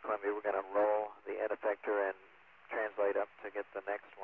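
A man's voice speaking over the Space Shuttle air-to-ground radio link, sounding thin and narrow like a radio transmission.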